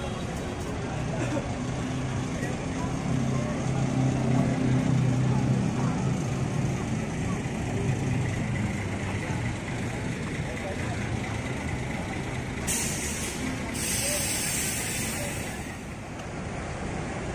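Diesel coach bus engine running at low speed as the bus manoeuvres, then near the end a short hiss of compressed air followed by a longer one from its air brakes.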